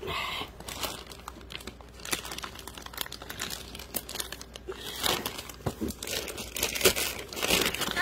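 Plastic mailer envelope crinkling and rustling in irregular crackles as it is pulled open and peeled off a cardboard box by hand, busier in the second half.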